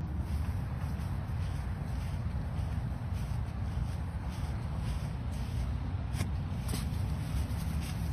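Steady low rumble and hiss of an outdoor phone-video recording, with a few faint clicks about six to eight seconds in.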